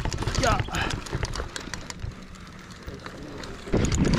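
Mountain bike on a dirt trail, a run of quick clicks and knocks as it moves off, with a short voice-like call about half a second in. Near the end a loud low rush of wind and tyre noise comes in as the bike picks up speed.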